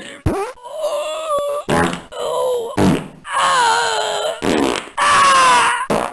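A string of loud fart noises, four or five drawn-out buzzes of about a second each, wavering in pitch, with short rough bursts between them.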